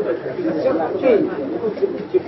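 Indistinct speech: several voices talking over one another.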